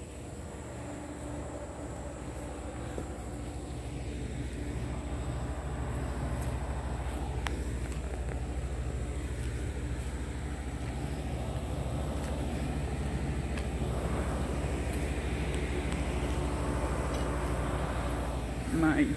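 Outdoor packaged air-conditioning unit running: a steady low drone that grows gradually louder and gains some fan hiss toward the end.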